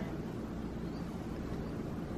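Steady low background hum of room noise, with no distinct events.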